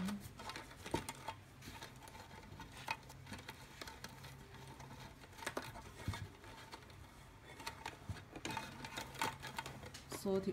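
Gloved hands handling cables and parts inside a wooden motor box: scattered light clicks and taps with soft rustling, over a faint steady low hum.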